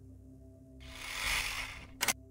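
Soft, steady ambient music drone. About a second in, a whoosh of noise swells up and fades, cut off by a sharp click right at the end: a transition sound effect.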